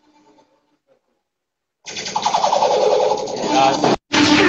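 Played-back music fades out and drops into dead silence for over a second. Then sound cuts back in suddenly, with indistinct voices over room noise.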